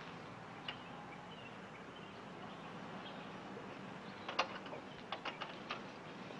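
Faint clicks and light knocks as someone handles things at a car's dashboard from the driver's seat: one about a second in, then a quick run of them from about four and a half seconds, over a steady low hiss.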